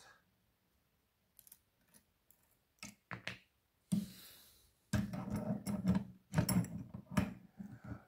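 Metallic clicks and rattles of a just-picked pin-tumbler padlock and its picking tools being handled. A few separate clicks and a tap come first, then a busier stretch of clicking and rattling over the last few seconds.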